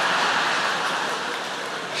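Large theatre audience laughing together after a punchline, a loud steady wave of crowd laughter that eases off slightly near the end.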